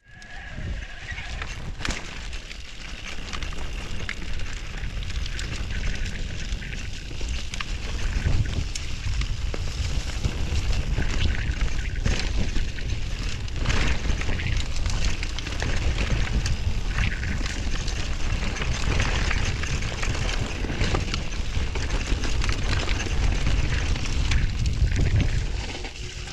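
E-mountain bike riding down a rocky dirt trail: wind buffeting the microphone and tyres rumbling over stones, with frequent clicks and rattles from the bike.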